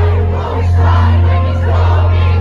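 Live concert music over a PA, with a deep sustained bass, mixed with a packed crowd shouting along.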